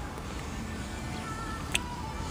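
Faint background music with a low steady hum under it, and a single short click near the end.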